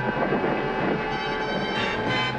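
Cartoon sound effect of a glowing magic space portal: a steady rushing hum, with sustained background music under it.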